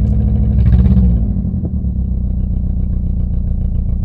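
Four-cylinder petrol engine idling roughly around 1000 rpm, heard from inside the car, not yet running on all four cylinders because its spark plugs are worn out. About a second in the revs briefly swell and rise, then settle back to a steady idle.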